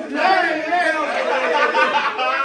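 Overlapping chatter: several people talking excitedly over one another.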